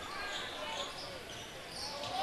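Basketball dribbling on a hardwood gym floor, with faint voices from the crowd in the hall.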